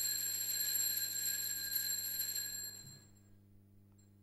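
Altar bell ringing at the elevation of the chalice after the consecration: a steady high-pitched ring that dies away about three quarters of the way through.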